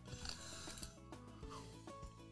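Quiet background music, with faint rubbing of a plastic screw cap being turned by hand on a hot sauce bottle.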